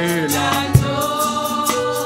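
Gospel worship song: voices singing over instrumental backing, with a couple of drum hits.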